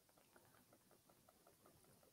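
Near silence, with only very faint scattered ticks.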